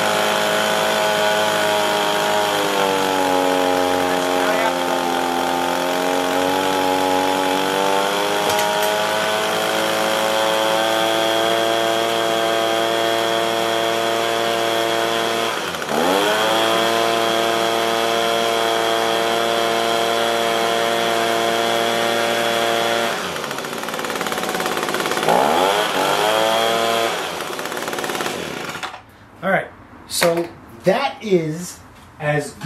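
Echo PB-265LN handheld leaf blower's small two-stroke engine running at high speed under throttle while its carburetor mixture is adjusted. The engine pitch dips sharply and recovers about halfway through, drops again later, rises briefly, and cuts off near the end.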